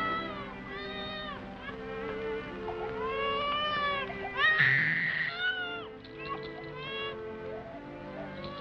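A baby crying in a run of short wailing cries, the loudest and harshest a scream about halfway through, over background music.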